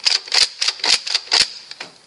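Nerf Alpha Trooper dart blaster fitted with an Orange Mod Works upgrade kit being slam-fired. The pump is racked back and forth with the trigger held, clacking and firing three darts about half a second apart.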